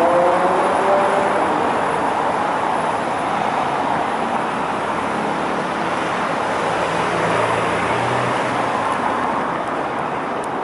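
City street traffic: cars and a scooter driving over cobblestones, with tyre noise throughout. An engine rises in pitch as a vehicle accelerates in the first second, and a low engine drone passes about three-quarters of the way through.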